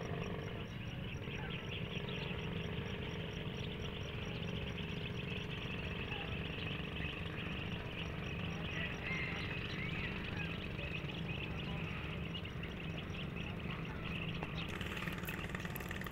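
Quiet lakeside outdoor ambience: a steady low engine hum with faint chirping over it.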